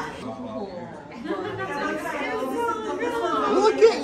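Indistinct chatter of several voices, no clear words.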